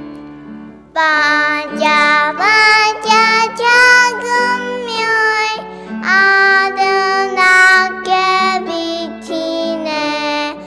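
A child singing a song over an instrumental accompaniment, the voice coming in about a second in and going on in phrases.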